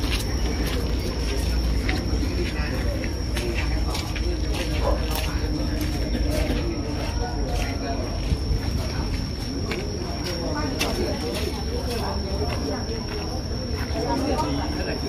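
Indistinct chatter of several people in the background, with scattered clicks, a low rumble, and a steady high-pitched tone held throughout.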